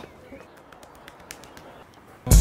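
Faint outdoor ambience with birds calling and a few light, sharp clicks.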